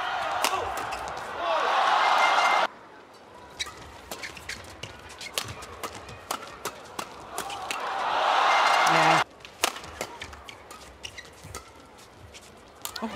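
Badminton doubles rally: a string of sharp racket hits on the shuttlecock. The arena crowd's noise swells up twice, each swell cutting off suddenly.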